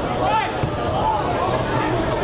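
Shouting voices of players and spectators carrying over a football pitch, with a single thud about three-quarters of the way through.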